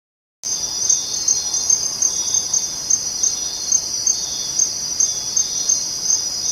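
Steady, high-pitched insect chirring with a faint regular pulse, starting about half a second in after a brief silence.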